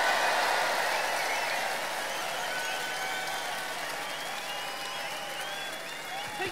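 Large crowd applauding and cheering, the applause slowly dying down.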